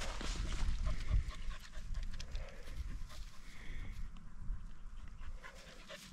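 A Yorkshire terrier panting rapidly to cool down in hot weather.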